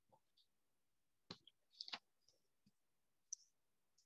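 Near silence broken by a few faint, short clicks: one about a second in, a pair near the two-second mark, and one more near the end.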